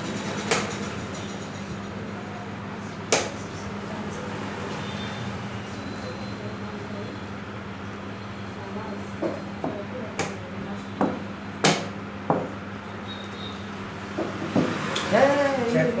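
Plastic chess pieces being moved and set down and a chess clock's buttons pressed: sharp single clicks and knocks, two near the start and a quick run of them between about nine and twelve seconds in.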